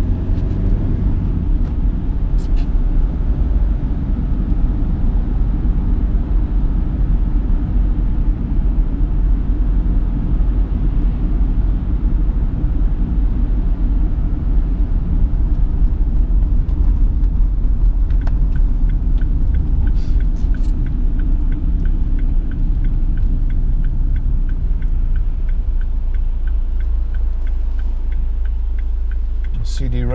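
Steady engine and road rumble inside the cabin of a 2010 Chevrolet Captiva 2.0 VCDi diesel driving at road speed. A regular ticking joins in a little past the halfway point and stops shortly before the end.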